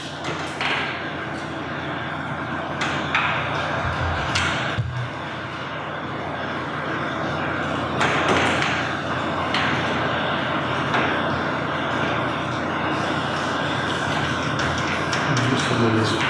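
Indistinct, low talk among several people in a large room, with a few scattered knocks and clicks.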